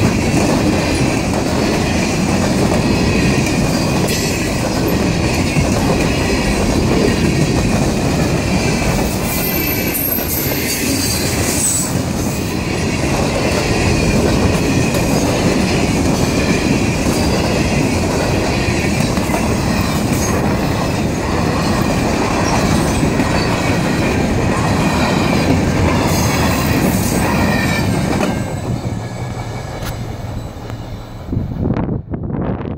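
Freight train cars rolling past at close range: a steady loud rumble and clatter of steel wheels on the rails, with thin high wheel squeals, most noticeable about ten seconds in. The sound starts to fade near the end as the last cars pass and move away.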